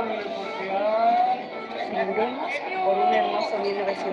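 Soundtrack of a black-and-white film's cantina scene playing through computer speakers: a crowd chattering, with several overlapping voices and music under them.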